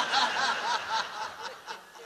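Audience laughter that dies down toward the end.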